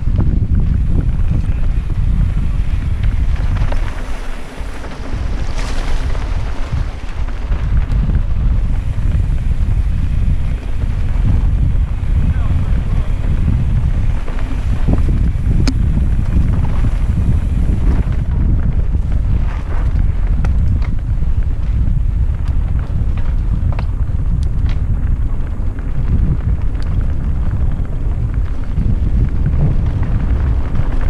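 Wind buffeting the microphone during a fast mountain-bike descent, a heavy low rumble, mixed with tyre noise and scattered sharp clicks and rattles from the bike on rough dirt trail.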